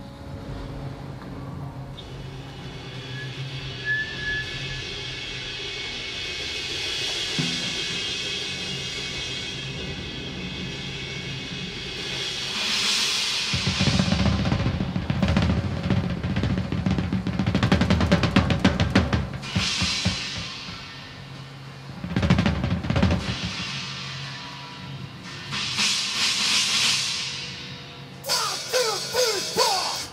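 Rock drum kit played live through the PA: rolls and fills on the toms and snare with kick drum, and cymbal swells and crashes, the drumming starting in earnest about halfway through and turning into fast strokes near the end. A held amplified note rings underneath in the first half.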